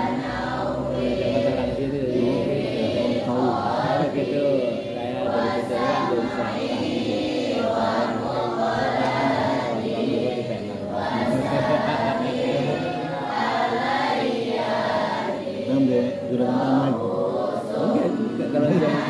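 A group of voices chanting a prayer together in unison, continuous and without pause.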